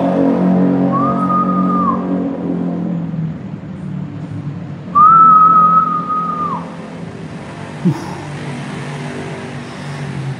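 A person whistling two long notes at one steady pitch, each sliding in and dropping off at the end, about a second in and again about five seconds in; the second is louder and longer. A low droning hum fades out over the first few seconds.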